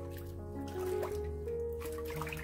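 Background music with held notes and a steady bass, over short splashes of water as a hand stirs sliced ginger in a bowl of cold water.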